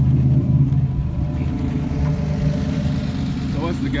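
Buick Grand National's turbocharged V6 idling steadily.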